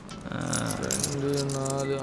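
Film background score: a held note with a jingling, rattling percussion line over it.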